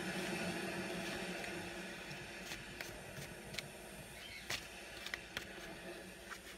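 A deck of oracle cards being shuffled by hand: a few faint, short clicks and flicks of card on card, irregularly spaced from about two seconds in, over a low steady hiss.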